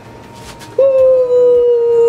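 A single loud, long whining note like a dog's howl, starting just under a second in, held about a second and a half and sliding slightly down in pitch.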